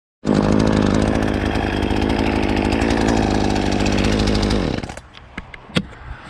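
ECHO CS-450P two-stroke chainsaw running at a steady speed, then shut off about four and a half seconds in, its pitch falling as it winds down. A few light clicks follow.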